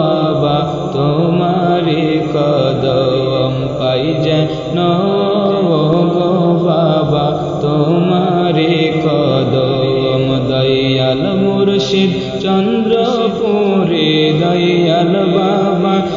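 Bengali devotional gojol (Sufi praise song) in a chanting style: a continuous melody that rises and falls in pitch, with musical accompaniment.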